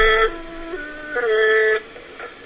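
A wind instrument playing a slow melody of long held notes. A high note steps down to two lower notes, then returns to the high note, which stops shortly before the end.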